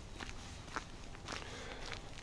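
Faint footsteps of a person walking on an outdoor path, about two steps a second.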